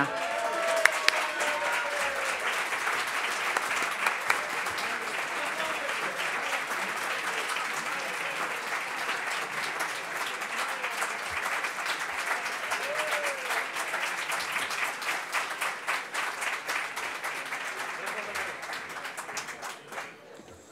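An audience applauding, a long steady clatter of many hands that dies away near the end, with a few faint voices over it.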